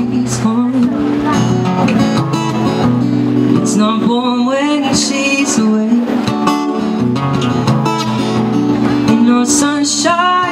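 Acoustic guitar strummed steadily under a man's sung vocal: a busker's live song with voice and guitar.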